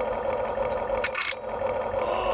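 Simulated engine idle sound effect played through the Huina 1592 RC excavator's built-in speaker, a steady electronic drone. A short burst of noise cuts across it about a second in.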